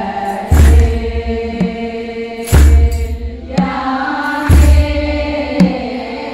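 Ethiopian Orthodox choir chanting a hymn together, held notes sung by many voices. A deep thump comes about every two seconds, with a lighter strike between each pair, keeping the beat.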